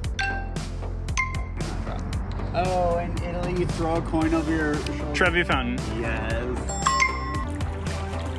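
Heads Up! phone game countdown beeps, a lower one then a higher one about a second apart, followed by a man's wordless vocalising with sliding pitch as he acts out a clue. A bright game chime sounds about seven seconds in, over a steady low hum.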